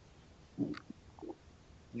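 A person's faint, short low murmurs over a video-call line, twice, with a small click between them, then a spoken "yeah" at the very end.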